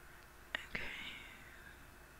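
A person's soft, breathy exhale or whisper-like breath lasting about a second, starting with a faint mouth click about half a second in.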